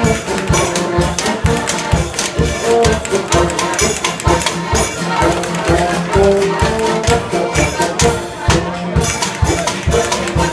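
Bavarian oompah band playing a lively folk tune: tuba bass and accordion melody over a steady, regular clacking beat from folk percussion, a devil's fiddle and wooden spoons.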